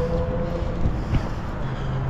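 Low rumbling wind buffeting the microphone outdoors, with a couple of faint knocks about half a second and a second in.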